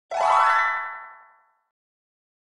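A short cartoon sound effect for an animated intro logo. It is one pitched tone that slides upward, then rings and fades away within about a second and a half.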